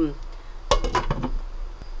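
Glass pot lid with a metal rim set onto a cooking pot: a quick cluster of clinks and rattles about two-thirds of a second in as it settles, then one last light tap near the end.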